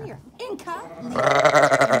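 A Zwartbles sheep bleating: one long, loud, wavering bleat starting about halfway through, after a shorter call near the start.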